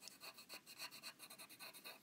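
Pencil scratching on paper in quick, short, repeated strokes, about five or six a second, faint and even.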